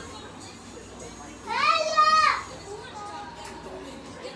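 A child's voice giving one drawn-out, high-pitched call or whine about a second and a half in, rising, holding and falling over just under a second.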